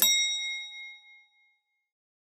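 A single bell-like ding sound effect, struck once and ringing out over about a second and a half.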